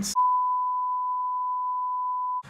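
Television colour-bar test tone: one continuous high beep at a single steady pitch, starting a moment in.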